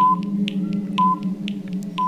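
Quiz countdown timer sound effect: a short high beep once a second over fast clock-like ticking, about four ticks a second, with a steady low drone underneath.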